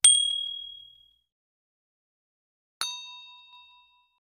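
Two short chime sound effects from a subscribe-button animation. Each starts with a sharp click and then rings out over about a second. The first, at the start, is a single bright ding. The second, near three seconds in, is a lower chime of several tones.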